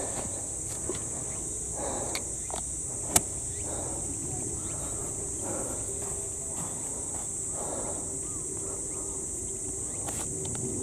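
A steady high-pitched drone of insects, with faint murmured voices and a single sharp click about three seconds in.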